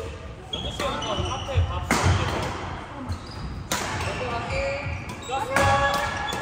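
Badminton doubles rally: rackets hit the shuttlecock sharply about three times, roughly two seconds apart, echoing in a large hall. Short high squeaks from sneakers on the court floor sound between the hits.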